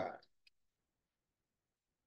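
The last syllable of a man's word, then a single faint click about half a second in, followed by near silence: room tone.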